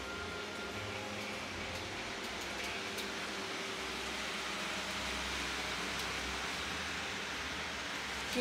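Steady background noise of a grocery store: an even hiss with a low hum, typical of shop ventilation and refrigeration, with a few faint clicks.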